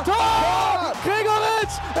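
A football commentator yelling a drawn-out 'Tor! Tor!' in German to celebrate a goal, over background music with a steady bass line.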